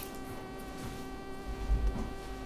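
A steady buzzing hum made of several even, unchanging tones, with a few low thuds in the second half.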